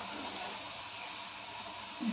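A thin stream of water pouring into a steel pan of boiling, foaming liquid, heard as a steady splashing hiss with bubbling.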